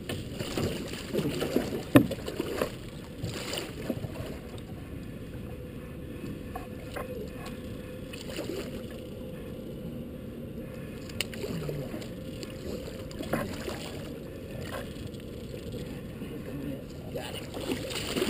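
Blue catfish thrashing and splashing at the water's surface beside a boat as it is landed, in bursts during the first few seconds and again near the end, with a steady low rush of water and wind between. A single sharp knock about two seconds in is the loudest sound.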